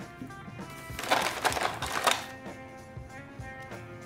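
Soft background music with steady held tones. About a second in comes a papery rustle lasting about a second, a brown paper bag being handled as the next razor is taken out, with a few light knocks of metal razors being handled.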